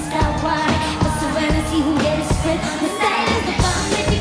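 Live pop band playing: a beat on two drum kits with cymbals, under a singer's voice carrying the melody.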